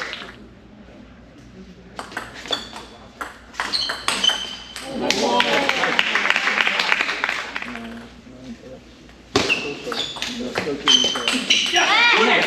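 Table tennis rallies: the celluloid-type ball cracks off paddles and the table in quick exchanges, each hit a short high ping. Spectators' voices follow the first rally, and a second rally begins abruptly a little after the middle.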